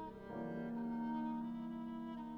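Violin with piano accompaniment playing contemporary classical music; about a third of a second in, the violin takes up a low note and holds it.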